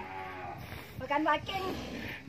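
Cattle mooing: a faint low call, then a louder, shorter one about a second in.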